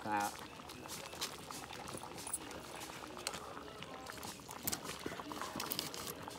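A pot of soup bubbling at a steady boil over an open wood fire, with scattered small clicks and pops.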